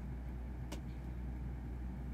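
Steady low hum of room noise, with a single faint click about three-quarters of a second in.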